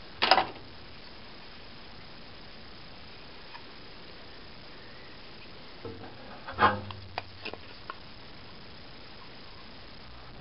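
Plastic housing of a Dremel Multi-Max oscillating multi-tool being handled and fitted back together. A brief handling noise comes near the start, then a few sharp clicks and knocks later on, the loudest about six and a half seconds in.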